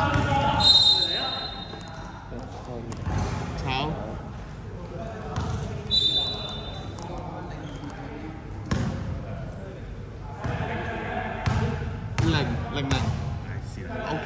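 Basketball bouncing on an indoor court floor during play, with sharp knocks and short high sneaker squeaks about a second in and at six seconds. Players' voices echo in the large hall.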